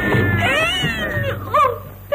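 A woman's high, drawn-out wail of distress, her voice wavering and sliding up and down in pitch, then a shorter cry about one and a half seconds in.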